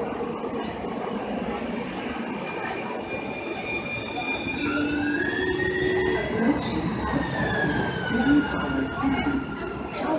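Siemens S200 light rail car pulling in along an underground station platform: steady rumble of wheels on rail under the high whine of its electric traction drive. The whine rises in pitch about halfway through, then falls steadily as the car slows.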